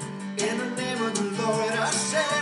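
Children's worship song: singing with a strummed guitar accompaniment and a steady beat.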